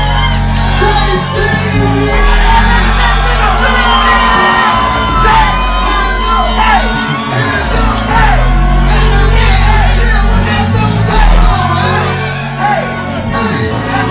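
Live hip-hop performance: a trap beat with heavy bass through a club sound system, a rapper's voice on the microphone, and the crowd shouting along, heard in a large room.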